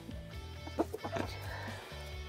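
Chickens clucking a few times in the coop, over background music with steady low held notes.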